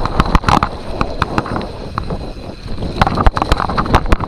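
Mountain bike riding fast down a rough dirt trail: tyres rumbling over loose, bumpy ground with frequent sharp knocks and rattles from the bike as it hits bumps, most of them in a flurry near the start and again about three seconds in.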